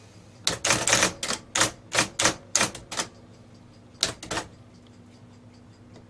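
IBM Selectric II Correcting typewriter typing with its golf-ball type element: a quick run of about a dozen sharp strikes over the first three seconds, then a few more about four seconds in, over the steady hum of its running motor.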